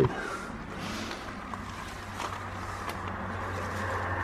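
A passing car on the road: a steady rush of tyre and engine noise with a low hum, slowly growing louder toward the end.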